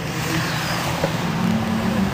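Nissan Skylines on track running down the straight towards the listener, their engine note growing louder as they approach.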